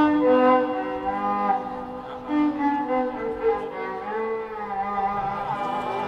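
Solo violin playing a melody of held notes, with slides in pitch between notes in the second half.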